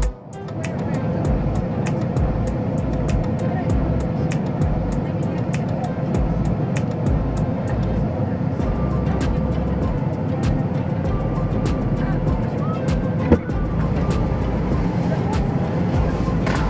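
Steady road and cabin noise of a pickup truck, mixed with background music and indistinct voices.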